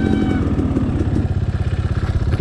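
Dirt bike engine running at low speed as the bike rolls slowly, settling into a steady, even throb in the second half.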